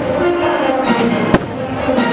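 Fireworks show: one sharp firework bang about a second and a half in, over loud show music that plays throughout.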